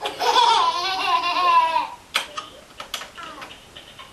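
Baby girls giggling: one long, high squealing laugh for about the first two seconds. A few short, quieter sounds follow.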